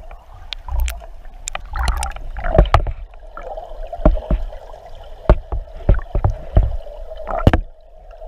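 River water heard through an action camera held underwater: a muffled, steady water sound with many sharp clicks and knocks and bubbling throughout.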